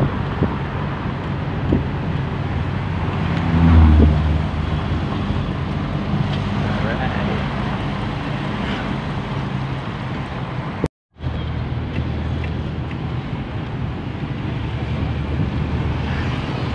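Vehicle engine running with road noise, heard from inside the cab while driving. A louder low rumble swells about four seconds in, and the sound cuts out completely for a moment near eleven seconds.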